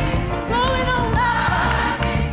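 A woman singing gospel in a strong, full voice, holding long notes that swell and bend, over a steady low accompaniment.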